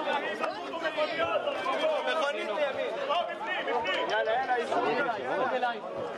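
Many voices talking over one another at once: a crowd's chatter, with no single voice standing out.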